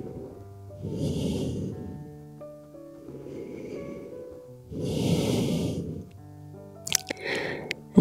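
A woman breathing slowly and audibly, two long breaths about four seconds apart, while holding a forward fold. Soft background music with sustained notes plays under the breaths, and a few small mouth clicks come near the end.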